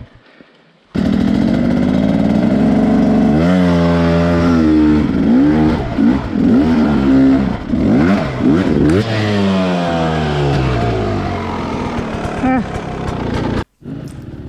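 Dirt bike engine revving up and down repeatedly, heard close up from the bike itself. It starts about a second in and cuts off abruptly just before the end.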